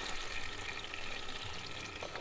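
A hot frying pan of butter and chicken juices sizzling: a soft, steady hiss.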